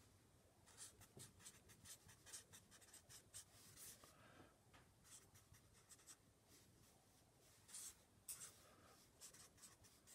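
Faint squeaks and scratches of a felt-tip marker writing on paper, in short irregular strokes as letters and symbols are drawn, with a brief lull past the middle.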